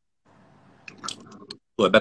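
Faint chewing close to a phone microphone, with a few small mouth clicks over about a second, followed by a voice starting to speak near the end.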